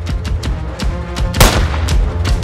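Background music with a driving percussive beat, and about one and a half seconds in a single sharp, loud bang: a starting pistol fired into the air to start the record run.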